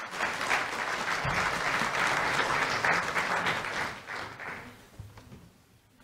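Audience applauding at the end of a speech. It is loud at once, holds for about four seconds, then dies away, with a couple of low thumps during it.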